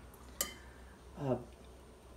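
A metal spoon clinks once, short and sharp, against a ceramic bowl about half a second in, while chicken is being spooned onto rice.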